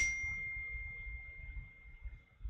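Mac notification chime: a single high ding that rings out and fades away over about two seconds.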